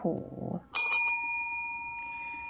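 A brief spoken exclamation, then a small metal bell struck once about three quarters of a second in, ringing on with several clear high tones that fade slowly.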